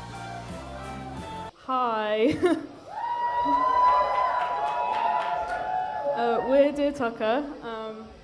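Music that cuts off abruptly about a second and a half in, then a person's voice at the microphone, talking and holding one long drawn-out call for about three seconds.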